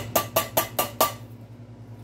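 A tin can knocked against the rim of a metal soup pot about six times in quick succession, each knock ringing briefly, to shake the last diced tomatoes out of the can.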